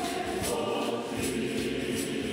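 Church choir singing a litany in isiZulu, with voices holding long chanted notes. A high percussive rattle faintly keeps time at about three beats a second.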